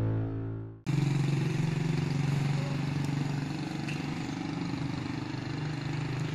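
The tail of a music jingle cuts off under a second in, giving way to the steady hum of an engine running nearby, with outdoor street noise.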